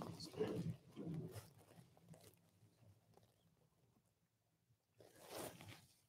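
Faint rustling of clothing and shuffling as a congregation kneels down onto a carpeted floor into prostration, dying away after about a second and a half into near silence.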